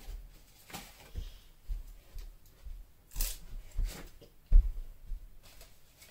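Paper plates being handled and pressed onto a cardboard box, giving light rustles and taps. A short scratchy rasp comes about three seconds in, and a sharp thump about a second and a half later.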